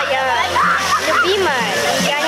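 Water jets of a splash fountain pattering onto wet paving, with several children's high voices calling and squealing over it.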